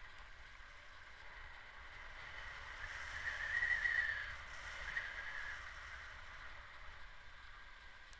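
Wind on the camera's microphone in paraglider flight: a steady low buffeting rumble with a higher rushing tone that swells to its loudest around the middle and then eases.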